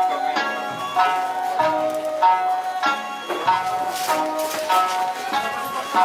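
Ryukyuan classical dance music: a sanshin plucked in a steady rhythm, about two notes a second, with a sung vocal line over it.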